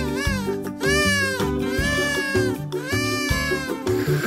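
Cartoon background music with a steady bass line, over which four arching, meow-like calls sound one after another, each rising and then falling in pitch.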